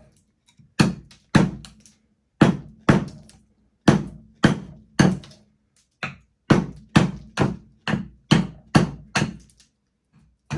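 Small hand axe chopping a thin conifer trunk propped point-down on a wooden stump: about fifteen sharp strikes, roughly two a second in short runs, each with a brief ring. The blows are cutting out a knot while shaping the trunk into a cone.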